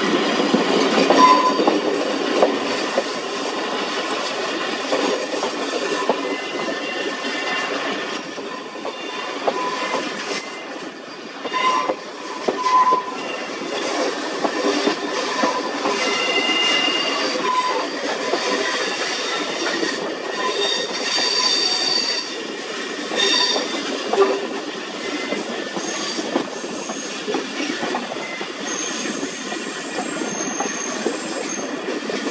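Railway carriage running along the line, heard from an open window: a steady rumble and rattle of wheels on track, with several brief high wheel squeals as the train rounds a curve.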